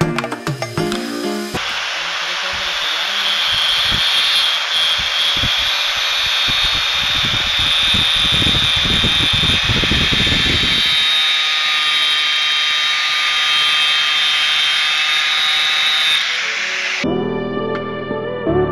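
Electric angle grinder cutting through a motorcycle drive chain: a steady high whine over harsh grinding, with uneven low pulses in the first half as the disc bites the links. It starts about a second and a half in and stops about a second before the end, with background music before and after.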